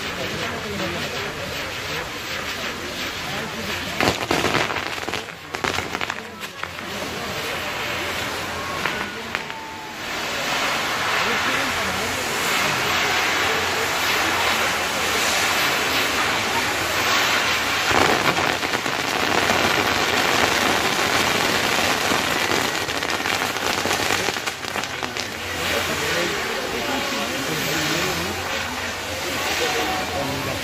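Fireworks on a pyrotechnic castle tower: spark fountains spraying with a dense hiss and crackle that grows louder about ten seconds in, with a couple of sharp bangs, over crowd voices.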